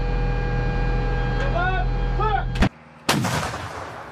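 A steady machinery hum inside the M109 Paladin's crew compartment, with a few short voice calls. About three seconds in comes a single loud shot from the Paladin's 155 mm howitzer, heard from outside, which then fades away.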